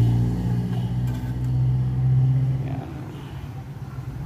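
Krisbow KW1500538 bench drill's 250 W motor running with a steady low hum, which fades away about three seconds in.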